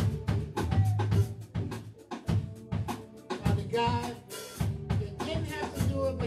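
Upbeat music led by a drum kit keeping a busy, steady beat of snare and bass drum over bass and other instruments.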